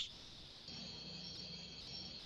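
Faint, steady high-pitched chirring with a low hum beneath it, starting just under a second in, picked up through an open video-call microphone.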